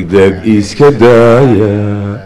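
A man chanting verse into a hand microphone in a sung, drawn-out voice. After a few short syllables he holds one long note for about a second near the end.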